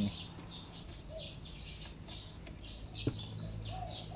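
Small birds chirping repeatedly in the background over a low steady hum, with a single sharp click about three seconds in.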